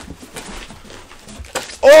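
Rustling of a cardboard shipping box and its plastic-wrapped contents being rummaged through, with a few small knocks. A man's loud exclaimed "oh" comes at the very end.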